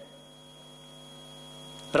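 Steady electrical mains hum with a faint, thin high tone over it, and no other sound.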